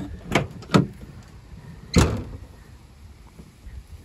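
A 2011 Chevrolet Silverado 2500 HD pickup tailgate being opened. The handle latch gives two short clicks in the first second, then there is one loud clunk about two seconds in as the tailgate drops open.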